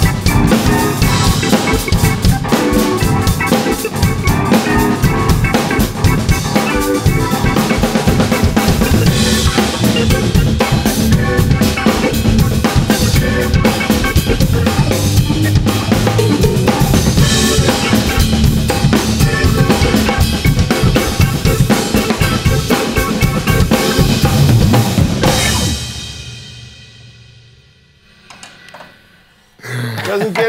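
Live drum kit and electric keyboard playing a busy groove together, with bass drum, snare and cymbals under sustained keyboard chords. The music stops about 25 seconds in and rings out over a couple of seconds.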